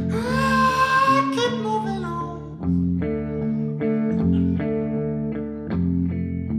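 Guitar chords strummed in a steady rhythm in a live song with no lyrics sung, a long wordless vocal cry held over the first second or so.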